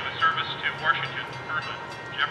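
A man's voice heard through a loudspeaker or radio speaker, sounding thin and tinny, with a faint low hum underneath for part of it.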